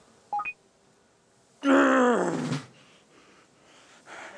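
A man's strained grunt of effort while raising dumbbells, about a second long and falling in pitch, starting a little past the middle. A brief short sound comes just before it, near the start.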